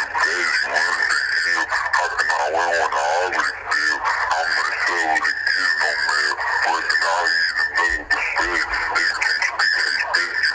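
An indistinct voice talking continuously over a steady high-pitched tone.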